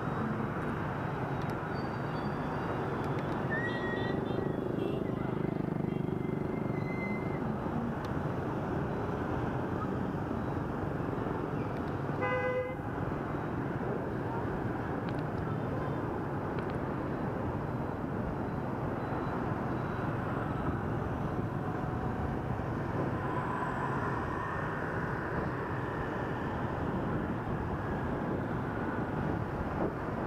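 Steady city traffic noise of scooters, motorbikes and cars, heard from a moving vehicle. Short horn beeps sound a few seconds in, and a brief horn toot comes about twelve seconds in.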